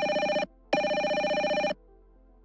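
Electronic softphone ringtone for an incoming call: a warbling ring in two bursts of about a second each. It stops near the end as the call is answered.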